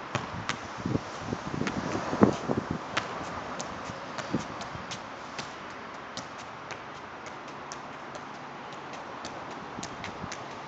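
A soccer ball being juggled: a run of soft thuds as the ball is kept up on the foot and thigh, the loudest about two seconds in, then lighter. Thin, sharp ticks come every half second or so throughout.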